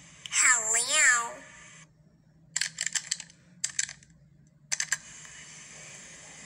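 A high voice with a swooping, wavering pitch for the first second and a half, then three short bursts of rapid clicking, like fast typing or button mashing, at about three, four and five seconds in, over a faint steady hiss.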